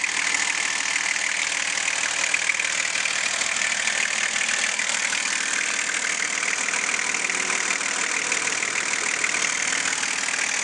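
Nissan Patrol Y61's RD28 2.8-litre six-cylinder turbo-diesel idling steadily, heard with the bonnet open over the engine bay.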